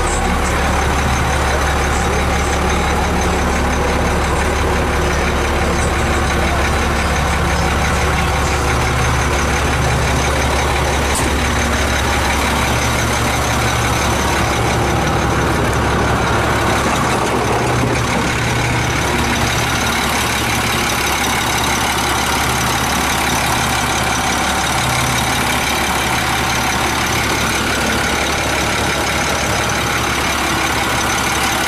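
2001 International 4700 truck's engine idling steadily.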